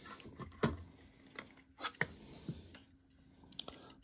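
Scattered light clicks and taps of hands handling a plastic light bar, its mounting stand and cable, about half a dozen small knocks spread through a quiet stretch.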